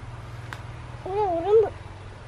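A short, high, wavering vocal call about a second in, over a steady low hum.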